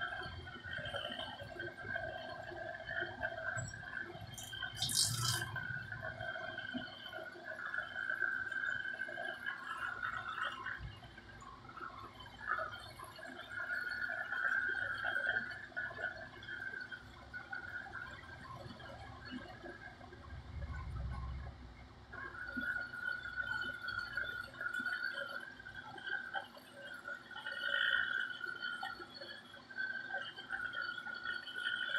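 Handheld electric facial massager running, a motor hum that swells and fades as it is moved over the face, with a brief hiss about five seconds in.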